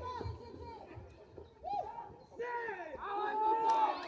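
Several voices of players and spectators shouting and calling out across a softball field during a play at first base, growing louder from about two and a half seconds in.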